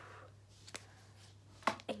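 Sharp taps and clicks of handheld hair-cutting tools being handled and knocked together: a light tick about three-quarters of a second in, then a louder double click near the end.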